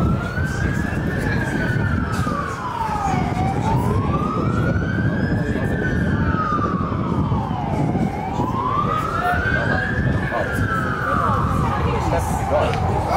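An emergency vehicle siren wailing: one long tone slowly rising and falling, with three long swells, over a low background rumble.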